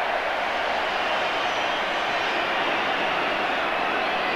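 Large football stadium crowd roaring and cheering steadily in celebration of a goal.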